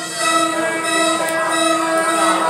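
Carousel band organ playing, holding sustained chords of many pitches sounding together.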